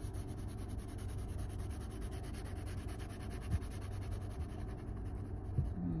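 Graphite pencil shading on sketchbook paper: a steady soft rubbing of the lead across the page. Two brief soft knocks come a little past halfway and near the end.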